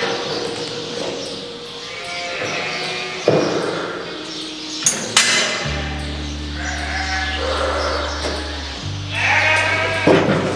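Sheep bleating several times, with a few sharp knocks in the middle, over background instrumental music with long held low notes.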